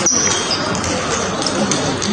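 Table tennis ball being struck by rubber bats and bouncing on the table in a fast rally: a few sharp clicks over the steady noise of a busy hall.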